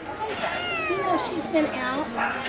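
Kitten meowing, a high call that falls in pitch, with people's voices in the background.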